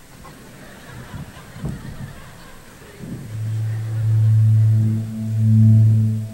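A low, steady droning tone starts about three seconds in and swells and breaks three times. It is a slow-motion playback effect in the skit, following the call to play the scene slowly. Before it there are only a few soft knocks from the stage.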